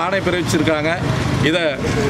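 Speech: a man talking in Tamil into close microphones, in quick continuous phrases.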